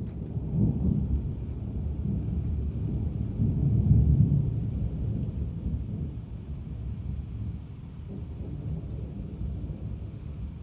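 Thunder rumbling over rain: it comes in suddenly, swells to its loudest about four seconds in, then slowly fades.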